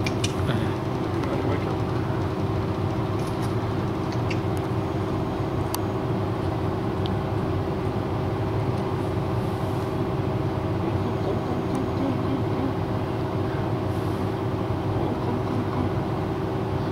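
A steady mechanical hum with several steady tones, unchanging throughout, with a few faint clicks.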